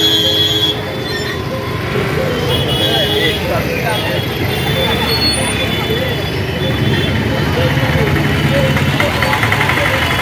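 Busy street crowd: many people talking at once over steady traffic of motorcycles and auto-rickshaws running, with a vehicle horn sounding briefly at the very start.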